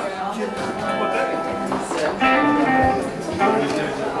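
Electric guitar played loosely on stage, a few notes picked and held rather than a song, with people talking over it.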